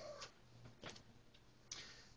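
Near silence: room tone with a low hum and a few faint, brief soft sounds.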